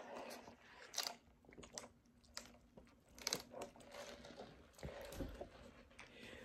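Faint mouth clicks and sipping sounds of someone drinking a soda, mixed with small handling rustles and a soft low bump about five seconds in.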